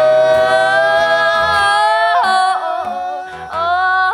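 Live duet singing over acoustic guitar strumming: a long held note for about two seconds, then shorter notes with quick flips in pitch.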